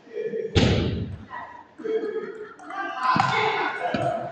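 A loud thud about half a second in, echoing in a large hall, and a second sharper knock about three seconds in, with people's voices between.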